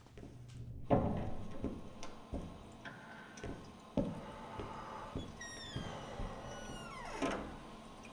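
A door knocks open about a second in, followed by the scuffing steps and thumps of a man in slippers on a tiled toilet floor. Then comes a long squeak falling in pitch and a knock near the end as a toilet cubicle door is swung shut.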